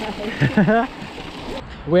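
Laughter over the steady rushing noise of a mountain bike rolling along a gravel trail, with wind on the handlebar camera's microphone; the rushing noise cuts off abruptly near the end.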